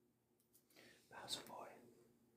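A faint whisper lasting about a second, with a sharp hiss in the middle.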